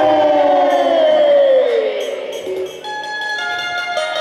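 Live jas jhanki devotional folk music: a long pitched note slides steadily downward over about two seconds. It then gives way to quieter held notes.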